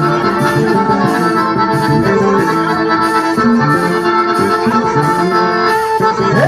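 Live forró band music led by a piano accordion, with the band backing it and a bright percussion beat about twice a second.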